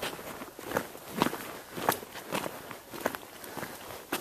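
Footsteps on a dirt trail at a steady walking pace, picked up by a camera riding in the walker's pocket.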